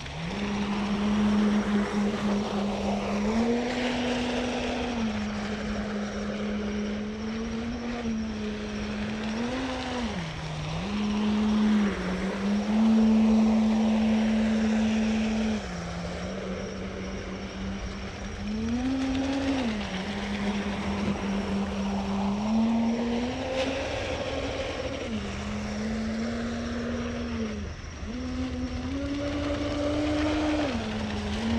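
Motor of an Aquacraft Lucas Oil 29-inch RC catamaran boat running at part throttle with a steady hum, its pitch stepping up and down every few seconds as the throttle is eased on and off. Higher sweeping rises and falls come over it as the boat runs back and forth across the water.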